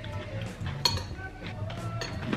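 Spoons clinking against cereal bowls, one glass and one ceramic, with a sharp clink a little under a second in, over background music.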